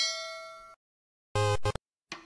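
Notification-bell sound effect: a bright ding that rings and fades out within about three-quarters of a second, followed about a second and a half in by a short second pitched tone.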